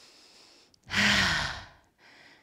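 A woman's single long sigh, a breathy exhale with a voiced tone falling in pitch, about a second in: letting out the effort after holding a crow arm balance.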